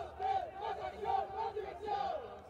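A group of men shouting and chanting together in a team huddle, several voices overlapping.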